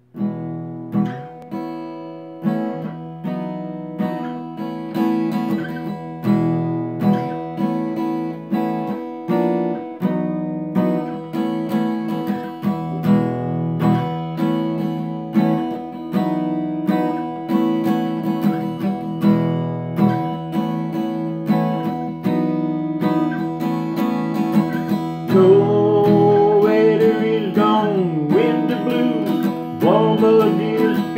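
Acoustic guitar strummed in a steady rhythm, playing the opening of a song; a man's voice joins in with a sung line in the last few seconds.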